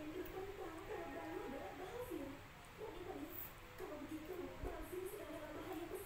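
Faint, indistinct voice, a wavering fairly high-pitched sound with no words made out, running on through the whole few seconds.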